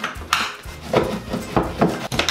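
A hammer striking a steel pry bar behind a wooden baseboard to lever it off the wall: several sharp metallic knocks.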